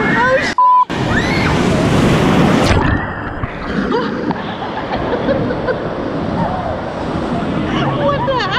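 A wave-pool wave breaking over swimmers and the camera. The sound cuts out briefly about half a second in, then a loud rush of churning water follows for about two seconds. After that it eases into steady surf and sloshing, with screams and laughter.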